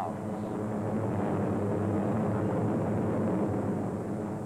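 Airplane engine noise on an old film soundtrack: a steady, dense rumble with a low hum, swelling a little and then easing off.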